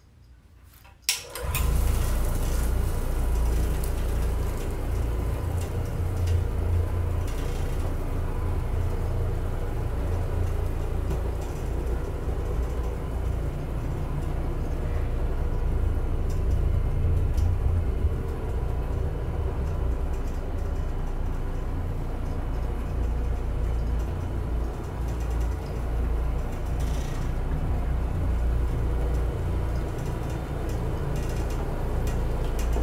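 Challenger OP orbital floor machine switching on with a click about a second in, then running steadily with a low hum as it orbits a microfiber bonnet over carpet.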